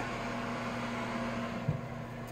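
Steady low electrical hum from a running kitchen appliance, with a faint fan-like hiss, and one soft knock near the end.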